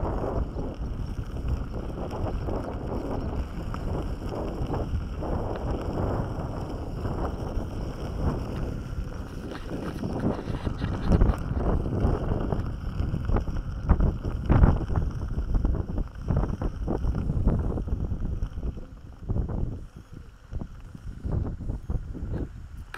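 Wind rumbling on the microphone and an electric unicycle's tyre rolling over a rough gravel track, with frequent irregular knocks and jolts from the bumps. It eases off for a moment near the end.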